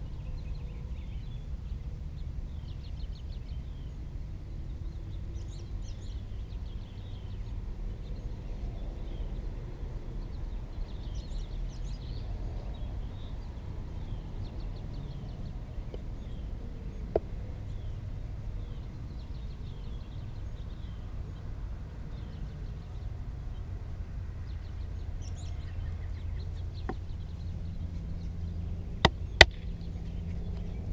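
Outdoor ambience of a steady low rumble with birds chirping in short, repeated high trills, and a single click partway through. Near the end come two sharp knocks of a wooden baton striking the spine of a bushcraft knife set into the end of a stick to split it.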